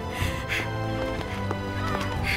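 Orchestral film score with sustained strings and brass over a steady low bass. Short shrill animal cries cut in over it twice, near the start and about half a second in.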